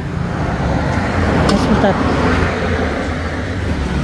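A motor vehicle passing on the road: a rush of engine and tyre noise that swells, peaks mid-way and fades, over a steady low traffic hum.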